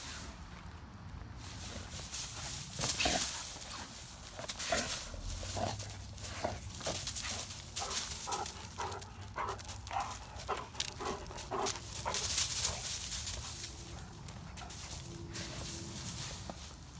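Dry fallen leaves crackling and rustling as a Great Dane romps through them with a rubber Jolly Ball, in a quick, irregular run of crunches. The loudest flurry comes about three-quarters of the way through.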